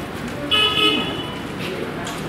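A vehicle horn gives one short toot about half a second in, over background street noise.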